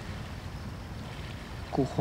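Steady low background rumble of outdoor ambience during a pause in the talk, with no distinct event in it; a man's voice starts near the end.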